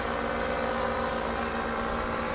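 Powered paraglider's paramotor engine and propeller running steadily in flight, a constant drone with a held pitch.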